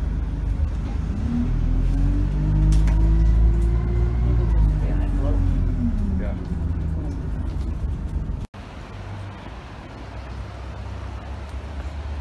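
Bus engine heard from inside the cabin. Its note climbs as the bus accelerates, then falls as it eases off. About two-thirds of the way in, the sound cuts abruptly to a quieter outdoor background.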